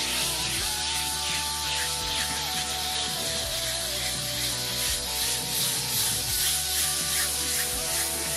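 Background music with long held notes, over the soft rubbing of fine 1000-grit sandpaper worked back and forth by hand across a wood surface.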